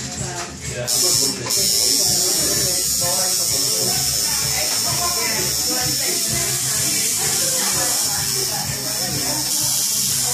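Electric tattoo machine buzzing steadily as it runs needle on skin; it starts up about a second in, catches briefly, then holds an even buzz.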